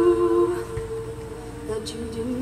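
All-female a cappella ensemble humming sustained wordless chords. The upper voices fade out about half a second in, leaving a low held note, and new harmony notes enter near the end.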